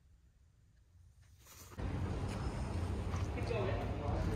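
Near silence for almost two seconds, then outdoor ambience cuts in suddenly: a steady low rumble and hiss of open-air background, with people's voices starting about three and a half seconds in.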